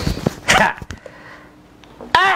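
A dog barks once, short and sharp, about half a second in.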